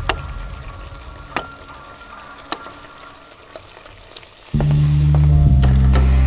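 Sizzling, bubbling cooking sound of pots on a stove, with a few sharp pops. About four and a half seconds in, loud music with a deep bass line cuts in over it.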